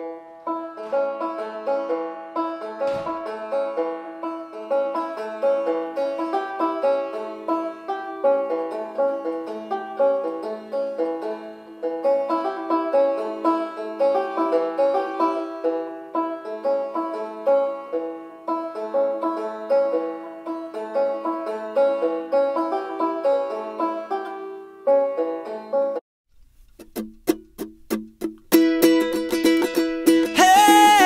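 Banjo picked in a steady instrumental passage of quick rolling notes, which stops abruptly after about 26 seconds. After a brief gap, quick sharp strummed strikes and another plucked string passage start near the end.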